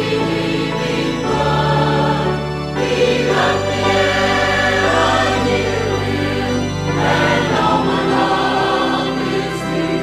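Church choir singing a hymn with instrumental accompaniment, its held bass notes changing every two to four seconds.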